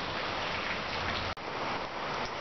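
Steady hiss of rain falling, broken by a sudden short dropout about a second and a half in.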